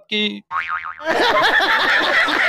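A cartoon 'boing' sound effect, a wobbling tone starting about half a second in. From about a second in it gives way to loud laughter from several people.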